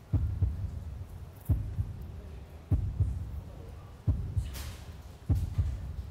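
A heartbeat-style suspense sound effect: deep low thumps repeating about every second and a quarter over a low hum, building tension before a result is announced. A brief hiss comes about four and a half seconds in.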